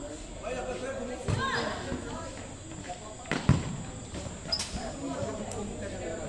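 A futsal ball being kicked and bouncing on a concrete court, with two sharp thuds, the louder one about halfway through, over players' and spectators' shouts.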